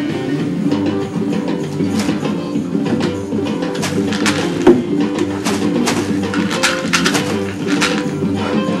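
Guitar being strummed and picked, a loose, unhurried tune with crisp strumming strokes. A single sharp click stands out about halfway through.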